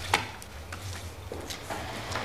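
A sharp knock just after the start, then a few lighter knocks and clicks, over a steady low hum.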